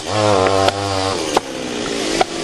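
A small engine running with a slightly wavering pitch for about a second, then dropping back. Two sharp knocks come about 0.7 s and 1.4 s in.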